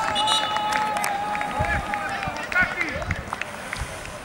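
Football players shouting and cheering at the end of a penalty shootout, with one long drawn-out yell over other voices that fades about two seconds in. Several dull thumps follow in the second half.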